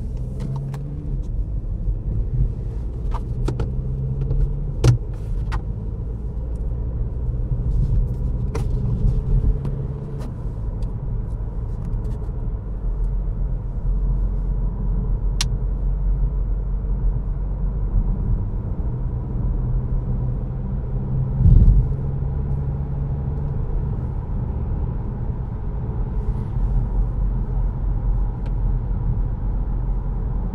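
Cabin noise of a Škoda Karoq 2.0 TDI four-cylinder diesel SUV on the road, gently gaining speed from about 70 to 80 km/h: a steady low rumble of engine and tyres. A few sharp clicks come through, and there is one louder thump about two-thirds of the way in.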